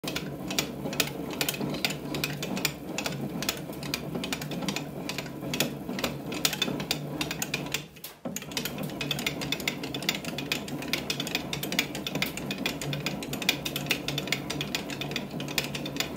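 Hand-cranked bat-rolling press working a Louisville Slugger Select PWR hybrid BBCOR bat barrel between its rollers under pressure. It gives a steady run of clicks and creaks, several a second, with a short break a little after the middle.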